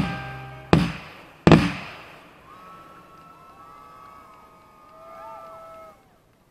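Two aerial firework shells bursting with sharp bangs about three-quarters of a second apart, each trailing off in echo, while the music's final chord dies away. Faint gliding whistles follow.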